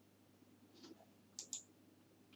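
Near silence broken by a few faint, short clicks, about one a little before the one-second mark and two close together near one and a half seconds.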